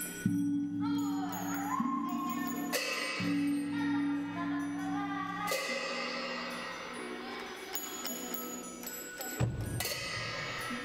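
Free improvised ensemble music on struck metal percussion over a sustained low drone. Bells or gongs are struck twice, about three and five and a half seconds in, and ring on. A gliding higher tone sounds between the first and second second, and a low thump comes near the end.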